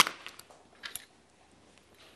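A sharp click right at the start, then a fainter tap or two about a second in, as small objects (plastic and spring-wire clips) are picked up and handled on a desk; otherwise quiet room tone.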